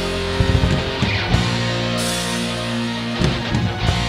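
Doom metal recording: electric guitars hold long sustained chords while the drum kit hits in short clusters.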